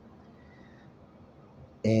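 Faint room noise during a pause in speech; a man's voice comes back in near the end.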